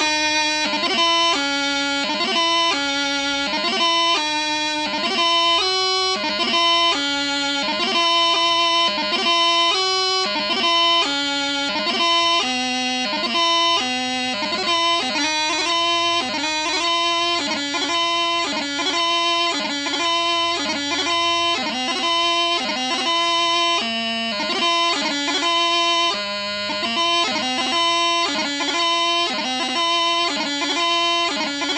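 Bagpipe practice chanter playing piobaireachd: the last line of a doubling runs straight into the first line of the crunluath without slowing down. Held melody notes are broken up by rapid grace-note flourishes.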